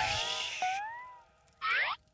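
Cartoon sound effect: a wavering tone that slides up and down in pitch and fades away over about a second, then a short sweep rising in pitch near the end.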